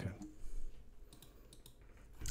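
Faint clicking at a computer: a couple of quick clicks about half a second in and a small cluster about a second in, over low room tone.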